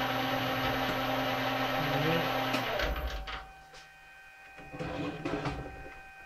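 Small metal lathe running with a parting tool cutting through a brass pad, a steady motor hum and cutting noise. The cut finishes and the motor is switched off about two and a half seconds in, and the noise drops away. A few light clicks and knocks follow.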